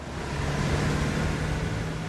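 A car driving past close by in traffic: road noise that swells at the start, with a steady low engine hum.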